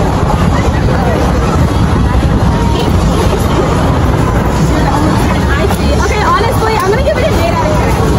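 Several girls talking over one another and laughing, over a steady low rumble.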